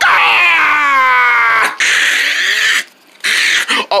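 A person's voice giving a long, high scream that slides down in pitch, voicing a paper puppet chicken being sent flying. It is followed by about a second of hissing noise.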